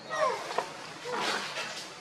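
Young macaques calling: short cries that fall in pitch, then a longer, rougher call about a second in.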